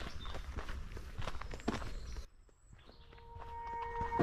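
Footsteps of a person walking on an earth towpath, a steady walking rhythm over low outdoor background noise. About two seconds in the sound cuts out sharply, and steady tones swell up near the end as music begins.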